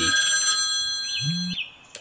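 A cartoon smartphone's electronic ringtone sounds as a set of steady high tones, then cuts off about one and a half seconds in as the call is answered.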